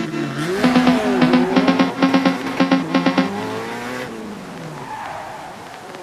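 Phonk beat with a sampled car engine revving up and down over it. The beat stops about four seconds in, leaving a noisy tail that fades out as the track ends.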